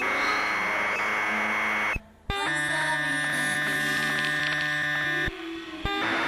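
Experimental electronic noise music: dense blocks of steady held tones and hum layered over noise, cut off abruptly about two seconds in and again near five seconds, with sharp clicks at the cuts.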